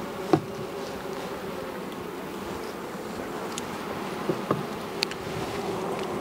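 Honey bee colony buzzing in a steady hum over the open frames of a hive, with a light knock about a third of a second in and a few faint clicks near the end.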